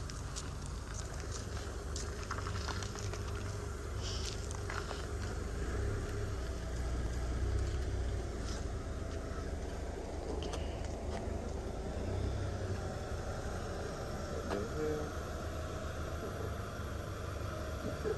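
A Nissan sedan's engine running at low speed as the car rolls slowly and pulls in. The low rumble drops away about two-thirds of the way through, with a few scattered clicks along the way.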